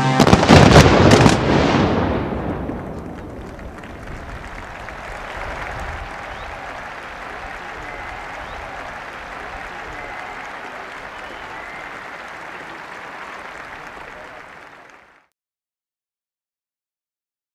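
A rapid cluster of loud fireworks bangs in the first two seconds as the massed band's final chord stops. A large outdoor crowd then applauds and cheers, fading out and cutting off about fifteen seconds in.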